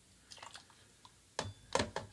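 Quiet handling sounds of pouring cream liqueur into a measure and tipping it into a steel cocktail shaker: a few faint small clicks and rustles, then a sharp click about a second and a half in as the measure meets the shaker.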